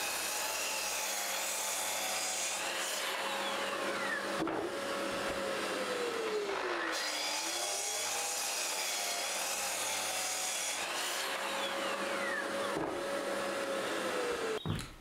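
Sliding mitre saw cutting timber noggins with a dust extractor running: a steady whirring noise with tones that glide down and back up in pitch.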